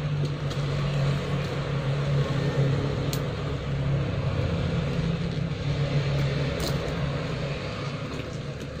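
Steady low background rumble. Two light clicks come about three seconds in and again near the seven-second mark while a keychain clasp is worked onto a handbag's handle hardware.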